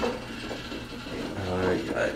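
Low mechanical running and rubbing of a slow-turning shaft and weighted arm driven by a small electric motor, with a man's voice briefly near the end.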